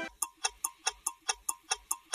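Steady clock-like ticking, about four to five ticks a second, as the sound effect of a TV news ident.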